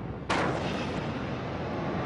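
A large explosion: a sharp boom about a third of a second in, followed by a sustained deep rumble.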